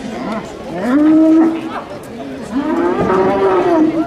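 A young Camargue bull (taü) bellowing twice: two long, loud calls, the first about a second in and the second from about two and a half seconds on, each rising at the onset and then holding its pitch.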